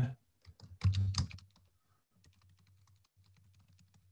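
Computer keyboard typing: faint, quick keystrokes, mostly from about two seconds in, with a brief spoken word about a second in.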